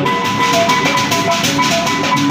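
Kulintangan gong-chime ensemble playing: small tuned gongs struck in a quick melody of short ringing notes at changing pitches, over a steady, fast drum beat.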